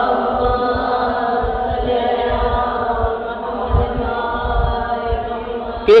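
One long, steady, drawn-out vocal tone held on a single pitch, like a sustained hum or chanted note, with no words.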